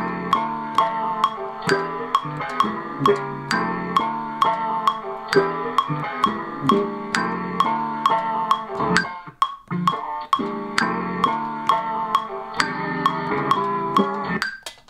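Chopped sample triggered from Ableton Push 3 pads, played as a run of chords and melodic notes over a steady metronome click. The playing pauses briefly a little past halfway, then carries on.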